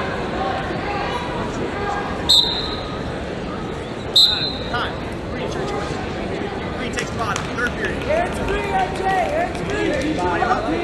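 Voices and chatter from an arena crowd, broken by two short, sharp, high-pitched blasts about two seconds apart, which are the loudest sounds.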